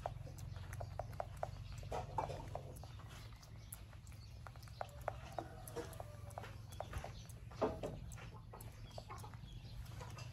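A macaque grooming a man's hair at close range: scattered small clicks and rustles as its fingers pick through the hair, over a low steady hum. A sharper click comes a little after halfway.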